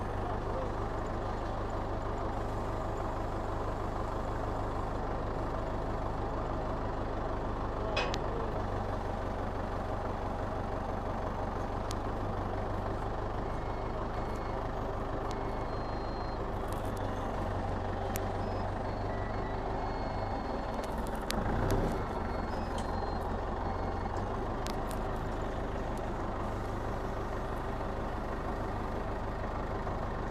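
Old forklift's engine running steadily with a low hum as the truck is driven. A short high-pitched sound comes about eight seconds in, and a brief louder noise about two-thirds of the way through.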